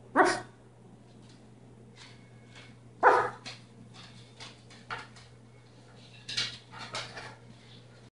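Blue-and-gold macaw calling close up: two loud, short calls about three seconds apart, then a run of shorter, softer calls near the end.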